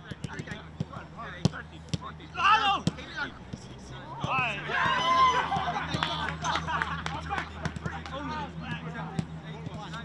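Footballs being kicked in a quick passing drill: a run of sharp thuds at irregular intervals, with players shouting over them.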